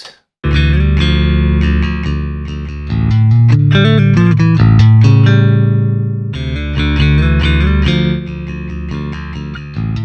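Electric bass guitar played back through the Gallien-Krueger 800RB bass amp plugin with its boost stage switched in, a thick, loud bass line that gets louder from about three to six seconds in.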